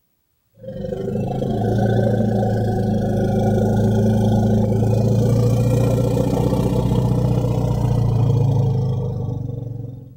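African elephant rumbles played from a recording: low, steady, overlapping calls that fade in about half a second in and fade out near the end.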